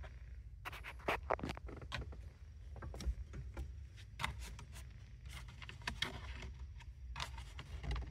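Scattered light clicks and knocks of plastic and metal as a Honda Fit's steering wheel is worked off its splined steering shaft, with a cluster about a second in.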